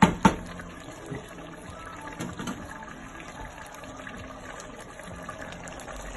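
Water poured from a jug into a stainless steel pot of browned meat and onions, a steady, fairly quiet pour. Two sharp knocks at the very start.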